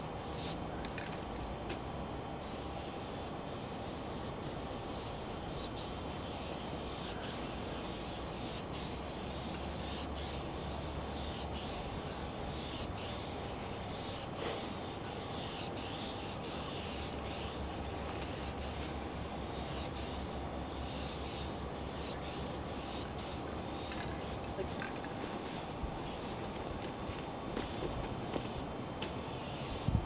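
Aerosol spray paint can hissing in many short bursts as it is sprayed onto a steel freight car, over a steady low hum.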